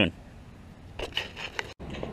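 Faint rubbing and scraping of fingers handling a dirt-covered coin, over a low steady hum of highway traffic. The sound cuts out sharply for an instant near the end.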